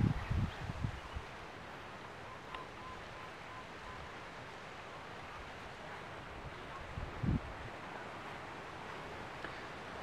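Quiet outdoor ambience: a steady faint hiss of breeze. A few low bumps in the first second and one more about seven seconds in.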